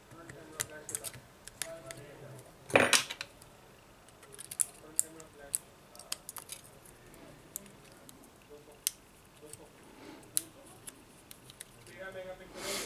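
Small metal hand tools, a pry tool and tweezers, clicking and scraping against a smartphone's frame during disassembly: scattered sharp ticks and taps, with one louder rasping scrape just before three seconds in.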